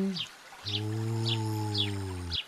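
A low, steady, hum-like tone starts about half a second in and is held at one pitch for nearly two seconds. Under it, short high chirps repeat, like cartoon birdsong.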